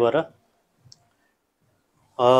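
The tail of a man's spoken word, then a single short, faint click about a second in.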